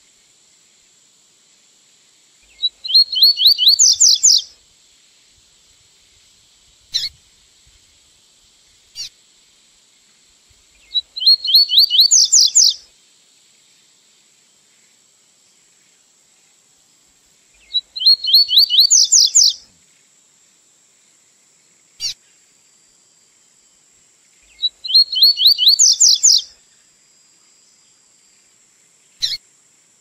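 Coleiro (double-collared seedeater) singing its 'tui-tui' song type, the model song used to teach young birds: four phrases about seven seconds apart, each a quick run of repeated rising notes ending on a louder, higher note. Single short chirps fall between the phrases, and a faint steady high tone runs under it all.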